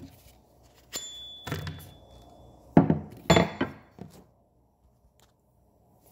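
Several knocks and thunks on a wooden tabletop as things are handled and set down. The first knock, about a second in, is followed by a faint thin ring lasting under two seconds; the loudest knock comes near the three-second mark.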